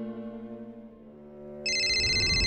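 Sustained low string music fades away. About one and a half seconds in, a mobile phone ringtone starts: a loud, high electronic ring with a rapid warble.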